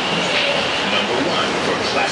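Automatic bus wash spraying water over a Starcraft bus, heard from inside the cabin as a steady rushing hiss of water striking the windshield and body, with the wash machinery running.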